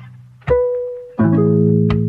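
Background music of plucked-string notes: a single note rings out about half a second in and fades, then a fuller chord sounds just over a second in and slowly decays.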